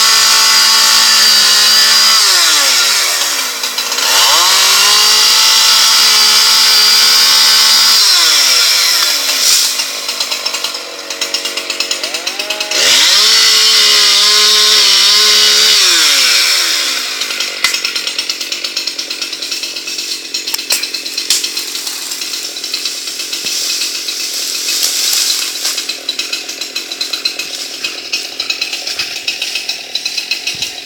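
Two-stroke chainsaw cutting into an ash trunk at full throttle in three long stretches, the revs dropping and climbing back up between them. About seventeen seconds in it falls back to a quieter, uneven idle for the rest of the time.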